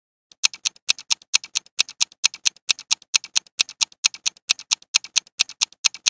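Countdown timer sound effect: a clock ticking quickly and evenly, about four to five sharp ticks a second, starting a moment in.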